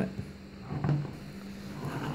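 Quiet room tone with a steady low hum between remarks, and one faint brief sound about a second in.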